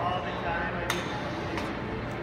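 Voices chattering in the background of a large indoor hall, with a sharp click about a second in and a fainter one shortly after.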